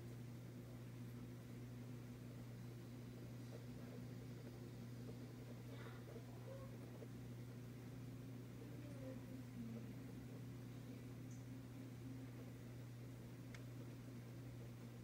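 Quiet room tone: a steady low hum with a few faint, small incidental noises.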